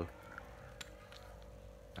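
Faint, scattered clicks from a used spinning fishing reel being handled, over a steady faint hum.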